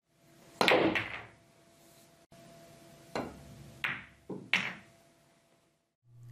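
Pool shot hit at fast speed: a sharp click of the cue tip on the cue ball about half a second in, then a few more hard clicks and knocks of balls and cushion a few seconds later as the object ball is driven through the pocket point.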